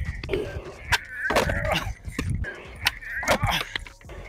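Skateboard on concrete during a 360 flip attempt: the tail pops and the board knocks down on the ground several times, with wheels rolling in between. The attempt is missed and the board ends up tipped on its edge.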